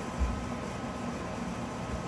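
Quiet room tone: a steady, even hiss with a faint hum, and a soft low bump just after the start.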